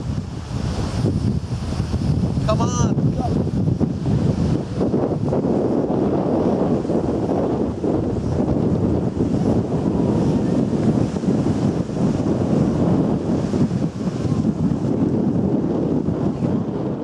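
Wind buffeting the microphone over surf breaking on the shore, loud and steady throughout, with a brief voice about two and a half seconds in.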